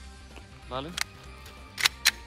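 Sharp metallic clicks from a Glock pistol in a Roni carbine conversion kit being loaded: one about halfway through as the magazine is seated, then two in quick succession near the end as the action is worked.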